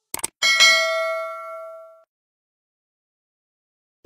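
Two quick clicks followed by a bright notification-bell ding sound effect that rings with several overtones and fades out over about a second and a half.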